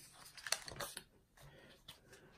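Paper pages of a spiral-bound songbook being flipped: a few soft rustles and flicks about half a second to a second in, and another just before the end.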